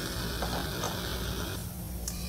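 Steady hiss of a lit Bunsen burner flame over a low hum, with two faint ticks in the first second; the hiss drops away suddenly about a second and a half in.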